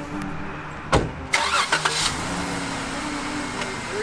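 Jeep Wrangler engine idling steadily. About a second in there is a single sharp bang, the driver's door being shut, followed by a brief clatter.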